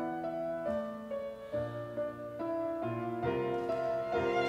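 Piano trio music: a grand piano plays a slow, melodic classical-style passage of struck notes and chords, with a violin beginning to play near the end.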